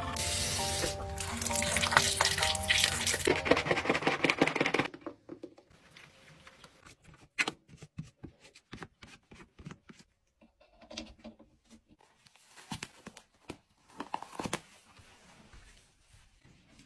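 Background music over a loud rasping, scrubbing noise of an electric toothbrush brushing teeth for about the first five seconds. Then it cuts off, and only faint scattered taps and short wiping sounds are left as a bathroom sink is cleaned.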